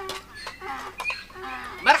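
Hens clucking in the background, a run of quick wavering calls, with a voice calling a greeting near the end.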